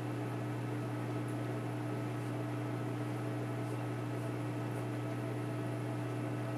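Reef aquarium pumps running: a steady low hum with a fainter higher tone above it and an even hiss, unchanging throughout.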